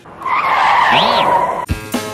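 Loud tyre screech lasting about a second and a half, with a short whistle that rises and falls in its middle. Music comes back in near the end.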